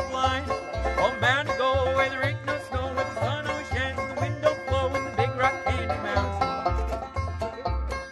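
Acoustic string-band jam led by a picked banjo, over a steady low bass line of about two notes a second, with a wavering melody line above.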